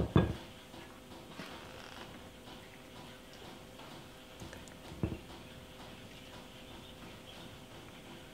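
A metal spoon clinking against a glass mixing bowl right at the start, then quiet, soft sounds of spooning filling onto a cabbage leaf, with one light knock about five seconds in.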